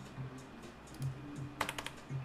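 A quiet stretch, then a quick run of about four sharp clicks near the end from the computer's keyboard and mouse as the user works a CAD sketch.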